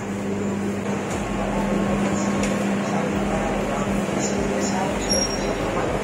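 Shop floor ambience: an indistinct murmur of other shoppers' voices over a steady low ventilation hum, with a brief high beep about five seconds in.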